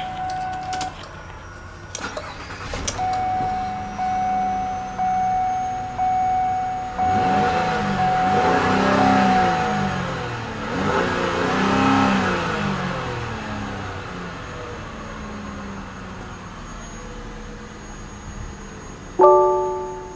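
2008 Lincoln MKZ's 3.5-litre V6 starting about two seconds in, with a warning chime beeping about once a second, then revved twice to around 3,000 rpm, each rev rising and falling before it settles back to idle. A short electronic tone sounds near the end.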